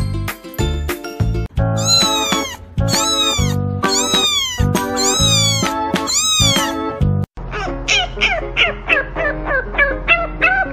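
Orange kitten meowing, about six long, high, loud meows in a row. Near the end a French bulldog puppy gives quick short yips and whines, about three a second. Music plays underneath.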